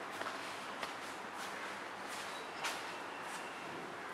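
Quiet room tone: a steady low hiss with a few faint, brief clicks.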